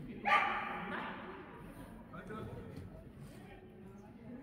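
A dog barks once, loudly, and the bark echoes and fades over about a second in a large indoor hall.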